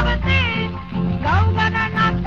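A baila song, with a singing voice over a steady accompaniment, played from a shellac record on a wind-up portable gramophone.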